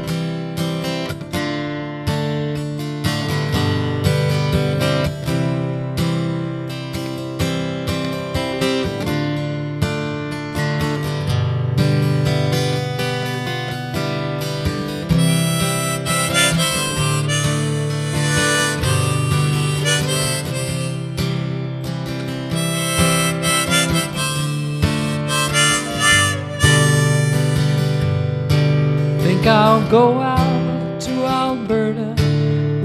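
Harmonica played in a neck rack over a strummed steel-string acoustic guitar, the instrumental introduction to a folk song before the singing comes in. The strumming starts sharply at the outset, and the harmonica's held notes waver near the end.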